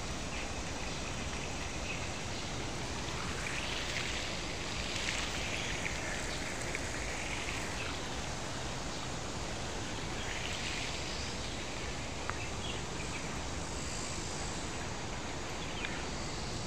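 Steady outdoor ambience of water splashing from a rockery fountain into a pond. High chirping calls swell above it twice, about four and ten seconds in.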